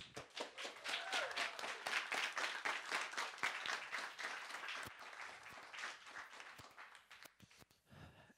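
Applause of distinct hand claps, loudest at the start, thinning and fading away before stopping about seven and a half seconds in.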